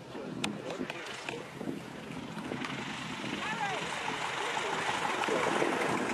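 Light high-wing aircraft landing on a grass strip: a noisy rush of engine, propeller and wind that builds over the last few seconds as it rolls past.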